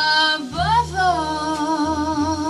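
Live jazz combo playing. A lead melody line scoops up in pitch and settles into a long held note with vibrato, over upright bass notes.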